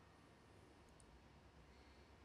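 Near silence: faint room hiss, with a faint computer-mouse click or two about a second in.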